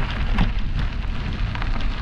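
Wind buffeting the camera's microphone: a loud, rumbling, crackling rush of noise.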